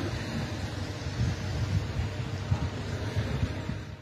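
Wind blowing across an outdoor microphone: a steady, low rumbling noise with a thin hiss above it, which drops away just before the end.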